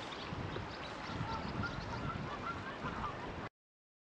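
Geese honking several times over a steady rush of wind noise. All sound cuts off suddenly near the end.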